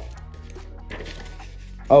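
Faint rustling and soft crackles of notebook paper being handled and cut against the stainless steel blade of an unsharpened axe in a paper-cutting test, with small crackles about half a second and a second in.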